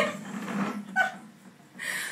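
Domestic cat meowing in distress while being bathed, with one short call about a second in.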